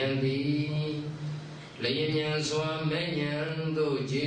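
Buddhist monk's voice chanting in long, held, level notes, a sing-song recitation rather than talk, breaking off briefly just before two seconds in and then resuming.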